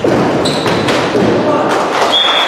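Futsal match in an echoing sports hall: players shouting, with sharp thuds of the ball being kicked. A short, high steady whistle sounds about half a second in.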